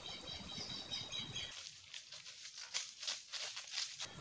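Outdoor ambience with a steady high thin whine, then about a second and a half in a run of light crunching footsteps on dry leaf litter, about three steps a second.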